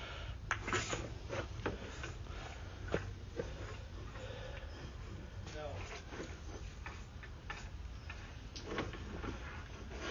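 Irregular clicks and knocks over a low steady hum, with faint voices in the background.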